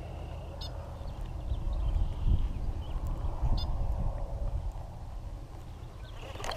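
Wind buffeting the microphone with a steady low rumble, over the soft whir of a baitcasting reel being cranked to retrieve the lure, with two faint clicks.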